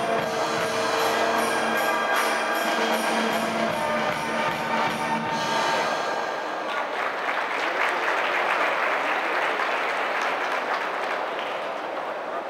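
Freestyle music over the arena sound system ends about halfway through, and sustained audience applause follows as the horse comes to its final halt.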